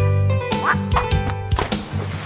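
Cartoon bird calls, a few short rising squawks, over upbeat children's background music.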